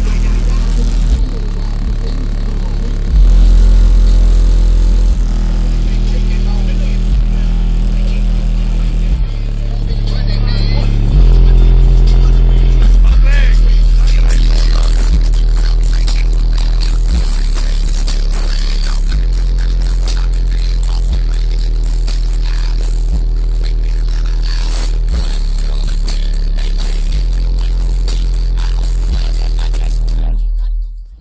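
Bass-heavy hip-hop track played loud on a car's upgraded audio system, with rapped vocals over long deep bass notes that step to a new pitch every two seconds or so. It is heard first from outside the car, then inside the cabin.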